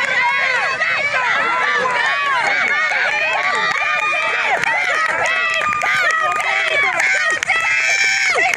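Sideline crowd of football spectators yelling and cheering, many voices overlapping loudly and continuously, urging on a ball carrier during a touchdown run.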